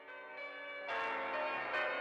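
Background music: a new track opening with chiming, bell-like tones that fade in and grow louder about a second in.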